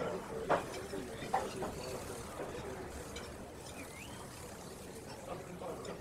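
Quiet room ambience with a couple of soft clicks early on, and one short, faint rising chirp about four seconds in from the hummingbird outside the window.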